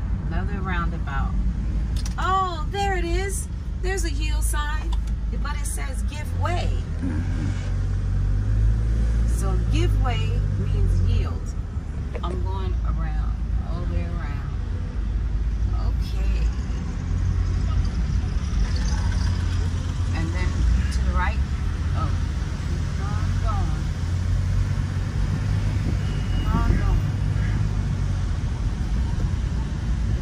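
Road and engine noise inside a moving vehicle's cabin: a steady low rumble, with scattered voices talking over it, most in the first few seconds.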